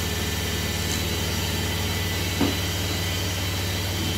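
A steady, low machine hum with an even hiss, and one brief knock about two and a half seconds in.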